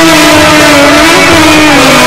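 Live Egyptian ensemble music: one sustained melody line sliding slowly down and back up in pitch over a steady goblet-drum beat.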